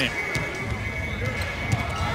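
A basketball being dribbled on a hardwood court, a few faint bounces, over background music and arena noise.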